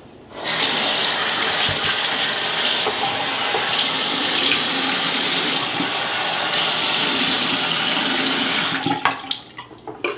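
A loud, steady rushing noise that starts abruptly and cuts off about nine seconds in, with a few sharp clicks as it ends.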